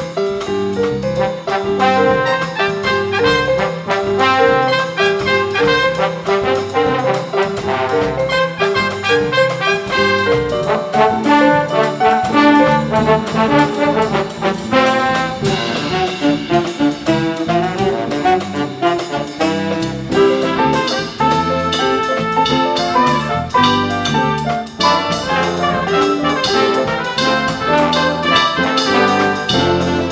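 Jazz big band playing a Chinese traditional tune arranged for big band, with trumpets, trombones and saxophones over piano, guitar, bass and drum kit. The brass section is prominent.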